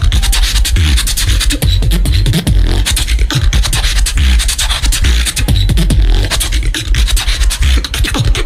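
Beatboxing through a stage microphone and PA: a fast, dense run of drum-like mouth hits over a heavy, steady bass.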